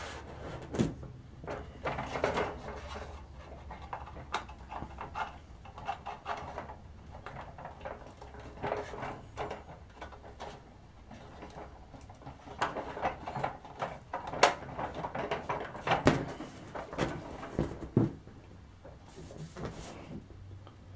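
Hard plastic toy-jeep parts clicking and knocking irregularly as a steering column is pushed and worked into the body.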